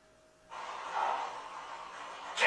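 Near silence, then a steady hiss of background noise from a film clip's soundtrack starting suddenly about half a second in, swelling briefly about a second in.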